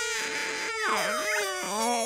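Cartoon cat character bawling: a wailing cry whose pitch swoops down and back up, over steady background music.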